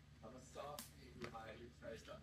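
Faint voices talking in the background over a steady low hum, with a couple of soft clicks from wrapping paper and scissors being handled about a second in.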